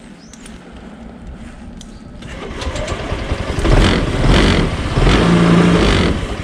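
Cold-started Honda PCX 125 scooter, its single-cylinder engine running low at first, then revved up about two seconds in, with a few strong throttle surges in the second half.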